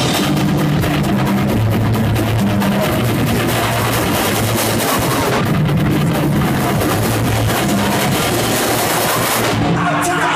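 Live rock band playing loud: electric guitar, bass guitar and drum kit, with held bass notes moving under steady drumming.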